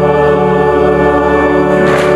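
Church organ and choir holding one long, steady chord at the close of the entrance hymn.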